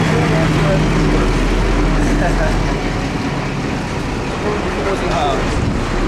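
Large diesel truck engine running close by, a steady low drone that eases off a little a few seconds in, with faint voices in the background.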